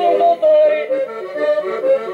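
Portuguese folk music: an accordion playing a tune with a voice singing over it in a bending, held line.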